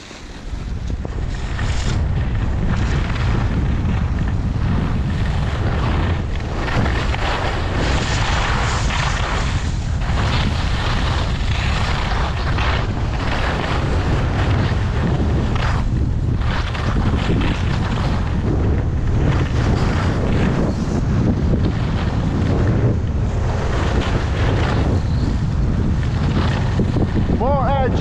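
Wind buffeting the microphone of a camera on a skier in motion, a steady low rumble that builds over the first second as the skier sets off. Over it, the hiss and scrape of skis on packed snow swells and fades every few seconds with the turns.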